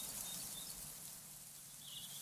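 Quiet outdoor background noise with a few faint, short, high chirps, as of a distant bird.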